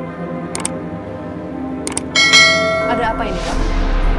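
Subscribe-button animation sound effect: two short mouse clicks, then a bright bell ding about two seconds in that rings and fades over about a second, followed by a whoosh. Steady background music runs underneath.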